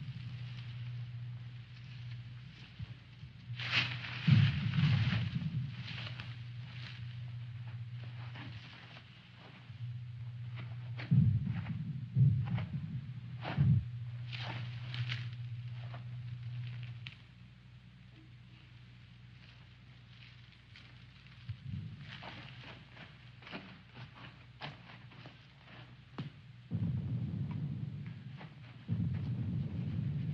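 Dry brush and twigs crackling and rustling, with scuffing footsteps, in irregular spurts and a few dull thumps, as someone pushes through undergrowth and then walks on dry ground. A low hum comes and goes underneath.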